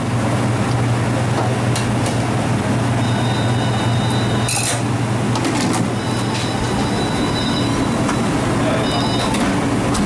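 Steady, loud hum of restaurant kitchen machinery, with a few sharp knocks and clatters from plastic dough trays and lids being handled.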